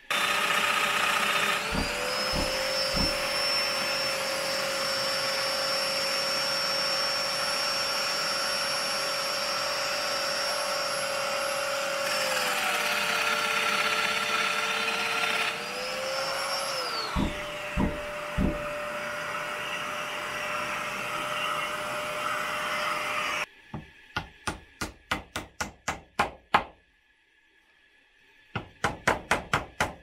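Domino loose-tenon joiner cutting mortises in window-frame stock, its motor running with a dust extractor attached, a few knocks as it works and a dip in motor pitch midway; the machines cut off suddenly. Then a brass-headed mallet taps the frame joints together in two quick strings of taps.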